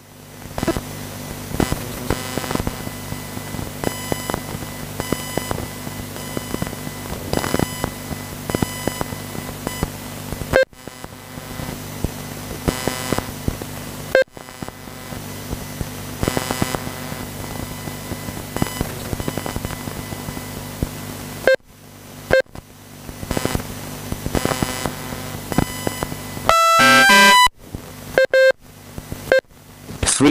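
Electronic beeps from an RC race lap-timing system repeat again and again over a steady low hum, as cars cross the timing line. The sound cuts out briefly several times. Near the end there is a quick run of stepped electronic tones.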